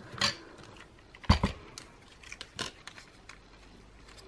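Clicks and knocks from a small hand-cranked die-cutting machine being worked and handled, the loudest knock about a second and a half in. Fainter paper-handling ticks follow.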